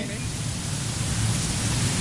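Steady hiss with a low hum beneath it: background noise of the recording, with no distinct event.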